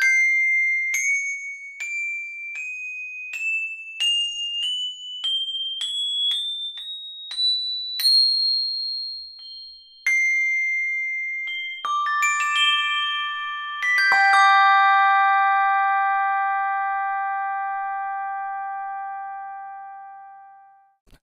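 Sampled high handbells played one at a time in a rising chromatic scale from C7 up to C8, about thirteen notes over eight seconds. A few more single notes follow, then several bells including some lower ones are struck together and left ringing, slowly dying away near the end.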